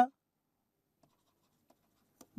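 Faint taps and light scrapes of a stylus on a pen tablet during handwriting, against near silence.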